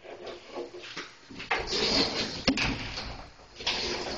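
A closet door being slid open, rumbling along its track with sharp clacks about halfway through and near the end.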